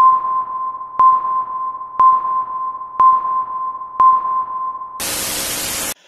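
Electronic intro sting: five sonar-like pings at the same pitch, one a second, each ringing on into the next. Then a second of loud white-noise static that cuts off suddenly.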